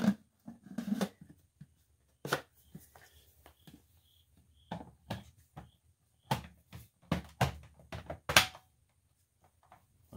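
Irregular clicks and knocks from hands handling plastic upright-vacuum parts and a filter, with quiet gaps between. The vacuum motor is off.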